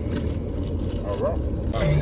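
Steady low rumble of a car heard from inside its cabin, with a voice starting near the end.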